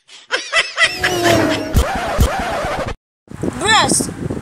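Non-verbal vocal sounds and laughter from people, with two short dull knocks about two seconds in. There is a brief gap of silence at a cut, then more laughter.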